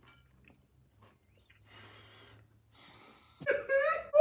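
Mostly quiet, with a few faint breaths from a man chewing a mouthful. Near the end comes a short, high-pitched vocal exclamation.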